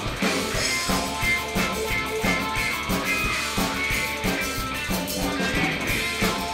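Live rock band playing on electric guitar, bass guitar and drum kit, with a steady drum beat.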